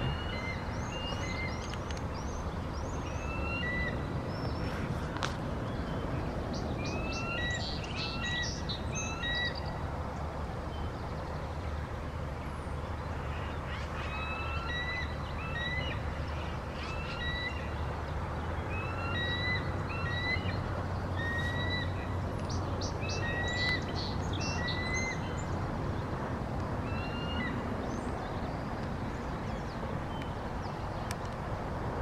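Adult bald eagle giving repeated high, chirping warning calls in series, with two bursts of rapid chattering about eight and twenty-four seconds in. The calls are alarm at another eagle that has come into the area. A steady low hum runs underneath.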